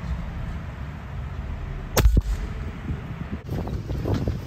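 A gun fired once about two seconds in, a sharp crack followed a fifth of a second later by a second shorter crack, over a steady low background rumble.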